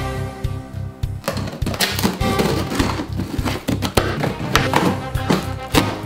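Background music: a held chord for about the first second, then a steady beat.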